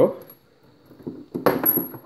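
A small metal hose fitting clinks once with a brief high ring about a second and a half in, after a few faint handling clicks.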